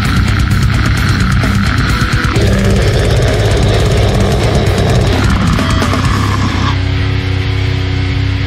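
Slamming brutal death metal: distorted guitars and bass with fast, dense drumming and cymbals. About two-thirds of the way through, the cymbal wash drops away, leaving heavy sustained low notes.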